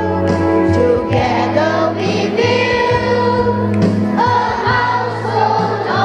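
Young people's church choir of children and teenagers singing a gospel song together, with notes held and changing throughout.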